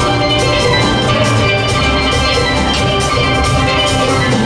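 A steel band playing live: many steel pans ringing together over a steady drum beat.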